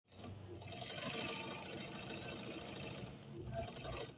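All-metal household zigzag sewing machine running steadily, stitching through fabric.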